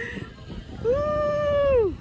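A woman's high, held excited cry of about a second from a zipline rider. It rises quickly, holds one steady pitch, and falls away at the end.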